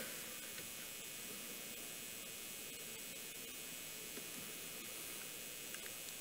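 Faint steady hiss with a low hum: room tone and the microphone system's background noise.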